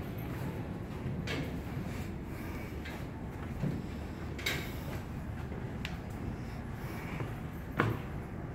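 Steady low rumble of an enclosed steel machinery room, with a few scattered knocks and clicks; the loudest knock comes near the end.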